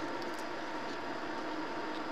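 Steady hum and hiss of an air purifier's fan running, with a couple of faint light ticks.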